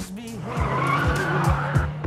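Audi R8 sports car accelerating hard: its V10 engine revs and its tyres squeal, growing loud from about half a second in. Underneath runs hip-hop music with a pulsing bass beat.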